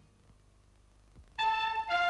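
A brief near-silent pause, then about one and a half seconds in a radio station's news jingle starts suddenly: bright music led by brass.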